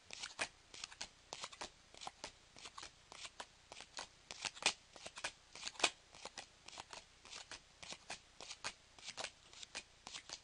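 A stack of Pokémon trading cards being flipped through by hand one at a time, each card giving a short papery flick or snap against the next. The clicks come irregularly, several a second, a couple of them sharper than the rest in the middle.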